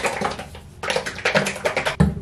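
A plastic hair-dye bottle being shaken hard to mix the dye, a fast rattling in two spells with a short pause between.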